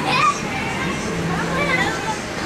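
Children playing, with high-pitched calls and chatter over a steady background of more children's voices.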